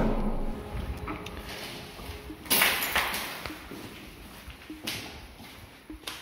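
Footsteps and handheld-camera handling noise in an empty, bare room: mostly quiet, with a sudden sharp scrape-like noise about two and a half seconds in and a fainter one near five seconds.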